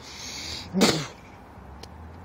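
A person spitting out chewing gum: one short, forceful spit a little under a second in.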